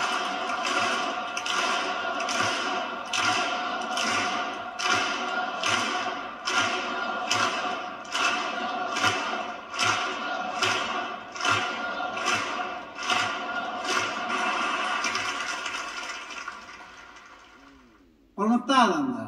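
Large audience clapping in unison, a steady rhythm of about two claps a second, over a steady held tone. The clapping fades out near the end.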